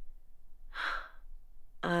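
A woman's short breathy sigh about a second in, an exhale after laughing.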